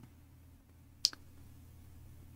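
A single sharp click about a second in, with a faint second tick just after it, over a steady low hum.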